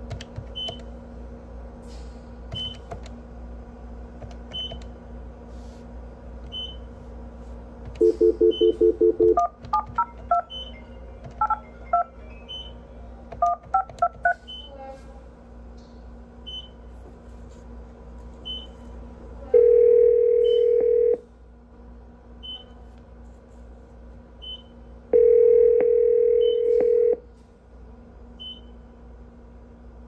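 A telephone call being placed: a short stuttering dial tone, then a quick run of touch-tone keypad digits, then the ringback tone sounding twice, about two seconds each, as the line rings. A faint high beep recurs every second or two over a steady electrical hum.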